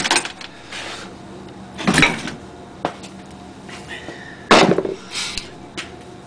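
Ice maker module's small gear motor humming steadily on 240 volts. Three loud, short scraping knocks stand out over the hum: one at the start, one about two seconds in and one about four and a half seconds in.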